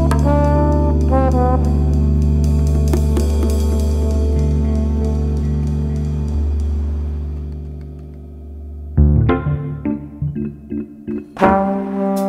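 Instrumental lounge jazz: one track ends on a long held chord that fades away, and about nine seconds in the next track begins with short, spaced chords.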